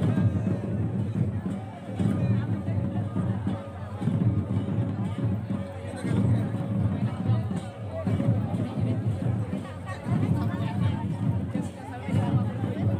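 Santali folk dance music: drum beats and voices in phrases that swell about every two seconds, over crowd chatter.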